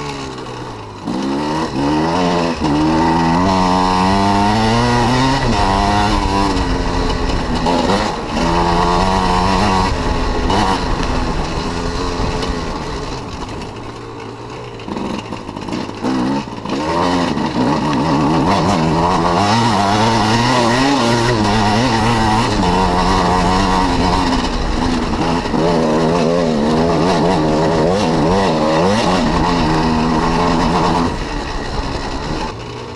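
Enduro dirt bike engine under hard riding, its pitch rising and falling again and again as the throttle is worked. It eases off to quieter, lower revs for a few seconds near the middle, then picks back up.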